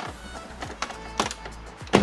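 A plastic pry tool levers up the BMW iDrive console trim, and its clips pop loose in three sharp clicks, the last and loudest at the very end. Background music plays under it.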